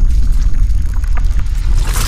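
Loud, deep rumble of an intro sound effect with scattered crackles above it, swelling into a whoosh near the end.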